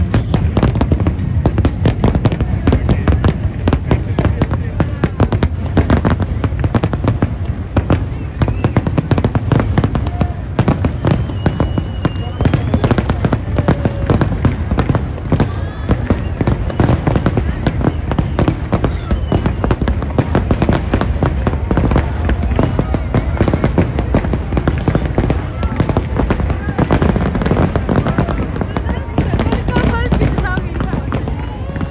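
A large fireworks display going off without a pause: many bangs and crackles every second.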